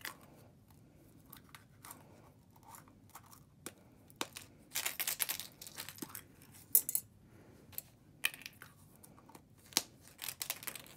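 A yellow plastic egg being filled and handled: small beads and buttons clicking and rattling against the plastic in scattered sharp clicks, with a short burst of rattling about five seconds in.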